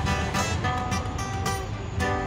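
Acoustic guitar strummed in chords, fresh strums several times a second, over a low steady rumble.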